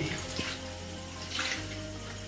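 Water splashing and pouring from a bucket in two short bursts, one at the start and one about a second and a half in.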